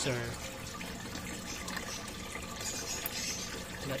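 Water trickling steadily in a turtle tank, with a faint low hum under it.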